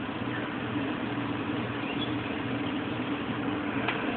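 Steady outdoor background noise with a low, even mechanical hum, and no distinct event standing out.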